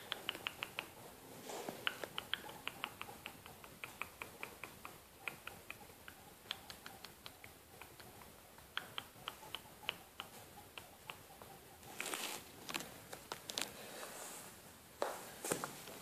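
Guinea pigs and a rabbit chewing hay: faint runs of rapid, crisp crunches, several a second. Rustling and handling noise comes in near the end.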